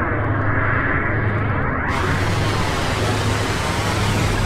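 Sound-design effect for an animated logo intro: a steady, loud rumbling whoosh of noise with a sweeping swirl running through it, turning brighter and hissier about halfway through.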